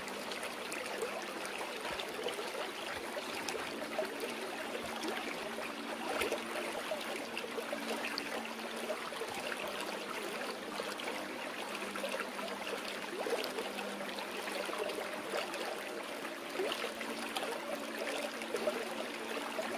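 Steady sound of flowing stream water, an even rush with no pauses, with faint held low tones underneath.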